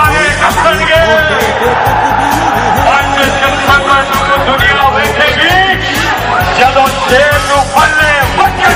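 Political protest song: sung vocals over a steady drum beat, loud throughout.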